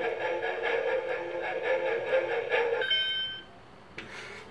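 Electronic shock lie-detector toy running its warbling analysing tone for nearly three seconds, then giving a short high beep. It signals a reading without giving a shock.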